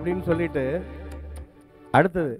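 A man's voice in short, pitch-bending phrases into a handheld microphone, over a low steady hum that cuts off about one and a half seconds in, then a sudden loud burst of voice at the very end.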